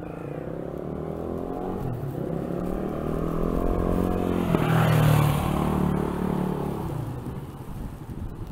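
A motor vehicle passing close by on the street: its engine and tyres grow louder to a peak about five seconds in, then fade as it moves away.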